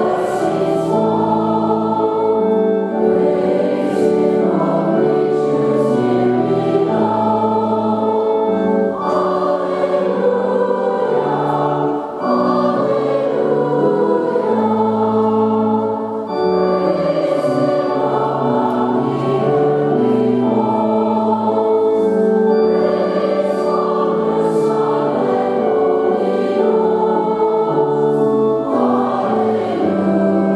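Mixed church choir singing in harmony, with long held chords that change every second or two.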